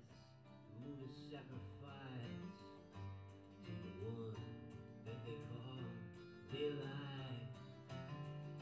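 Two acoustic guitars played live in an instrumental passage of a folk song, plucked notes and strums ringing through a hall.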